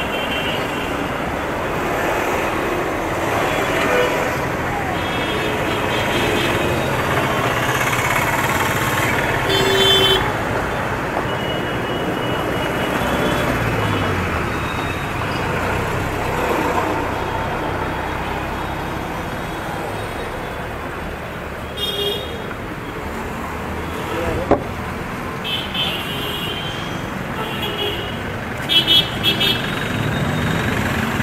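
Busy road traffic: vehicle engines running and cars passing in a steady din, with horns honking now and then, several short honks close together near the end.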